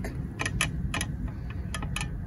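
Several light, sharp clicks at uneven intervals, over a steady low rumble of wind on the microphone.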